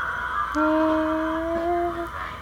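A single steady held note begins about half a second in and rises slightly in pitch near the end.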